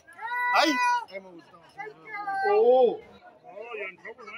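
A person's voice giving two drawn-out, high-pitched, wavering cries, the first about half a second in and the second, bending up and then down, near three seconds in.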